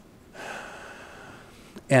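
A man drawing a soft breath in through a close microphone, starting about half a second in and lasting just over a second; speech starts again at the very end.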